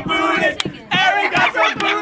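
A group of young people yelling and cheering together, loud overlapping voices with short breaks between shouts.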